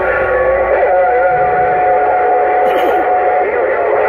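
Uniden Grant XL CB radio's speaker receiving channel 6 (27.025 MHz): several steady whistling tones sound at once with warbling tones wavering over them, the sound of overlapping signals from stations keyed up together on a crowded channel.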